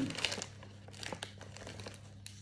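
Teal non-woven fabric gift bag crinkling and rustling as it is handled and turned over: a busy patch of small crackles in the first half second, then scattered lighter crackles.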